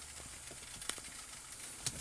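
Faint steady hiss of background noise, with two faint clicks, one about a second in and one near the end.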